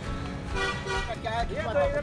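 A vehicle horn toots briefly about half a second in over street noise, followed by a voice with wide swings in pitch in the second half.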